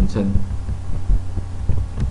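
Computer keyboard typing: a run of short, irregularly spaced key clicks over a steady low hum.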